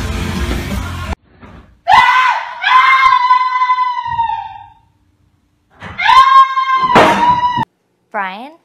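Loud rock music cuts off about a second in; then a person screams twice, two long high-pitched screams, the first lasting about three seconds and the second just under two.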